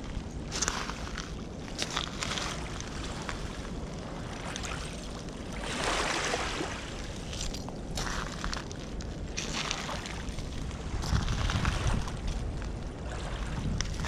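Wind rumbling on the microphone over small waves washing onto a foreshore of glass and pottery shards, swelling about six seconds in and again near the end, with a few crunching steps on the shards.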